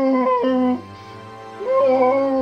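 Two drawn-out, whimpering baby-dinosaur calls with sliding pitch, over background music.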